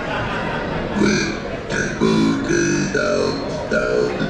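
A live band's instruments starting up between songs: a short run of separate pitched notes begins about a second in, each held briefly.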